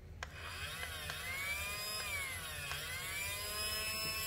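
Casdon toy Dyson cordless stick vacuum running, starting with a click just after the start. Its small motor whines with a pitch that rises and falls in slow swells, roughly once a second or so, as the nozzle is worked into a fabric dog bed.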